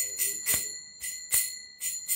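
Small brass hand cymbals (karatalas) struck about every half second to a second. Each stroke is a sharp chink that rings on in a steady high metallic tone, as a kirtan winds down.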